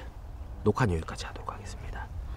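Speech only: a man speaking a few words.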